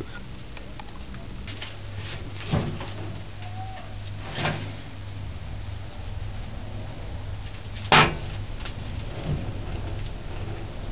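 Kitchen knocks and clatter over a steady low hum, the loudest a single sharp knock about eight seconds in as a metal loaf pan is set down on a gas stove's grate.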